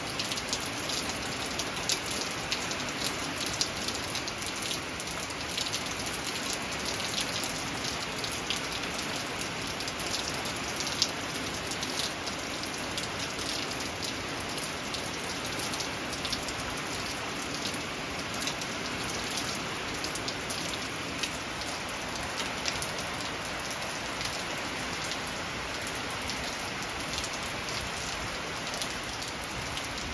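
Steady rain: a constant hiss dotted with many small drop ticks, with a few louder drops standing out.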